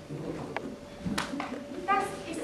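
Lull in stage dialogue in a hall: faint voices, two sharp clicks and a faint steady hum, with an actor's voice starting up near the end.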